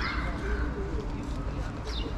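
A bird calling, with people's voices in the background.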